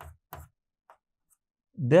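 Marker pen writing on a whiteboard: two short strokes in the first half second and a faint one about a second in, then a man starts speaking near the end.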